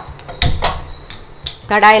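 A few sharp knocks of cookware on a gas stove, the loudest about half a second in, followed near the end by a woman starting to speak.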